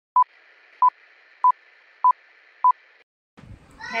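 Film countdown leader sound effect: five short, identical beeps about 0.6 s apart over a faint steady hiss, stopping about three seconds in.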